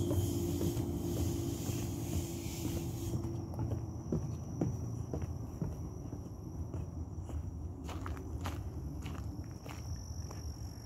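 Footsteps along a gravel path as the person filming walks, over a steady low rumble of wind or handling noise on the phone's microphone, with a few scattered crunches and clicks. A faint, thin, high insect tone comes in after about three seconds.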